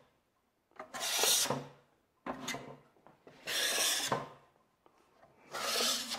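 Wide flexible steel skimming blade scraping wet joint compound across paper drywall tape, in about four separate strokes of half a second to a second each, feathering the compound over the tape.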